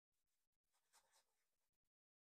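Near silence: the sound track is all but muted, with only the faintest trace of noise.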